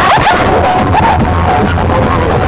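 Very loud music blasting from banks of horn loudspeakers and stacked bass speaker cabinets of a festival sound-system rig, with a heavy steady bass under wavering high-pitched sounds.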